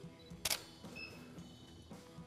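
A single shutter click from a Canon EOS-1D X Mark II DSLR taking a frame, about half a second in.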